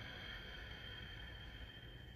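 A woman's long, deep breath at the close of a yoga practice: a soft, steady hiss of air held through the whole stretch.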